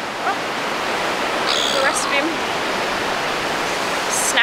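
Surf breaking and washing up a sandy beach: a steady, even rush of noise.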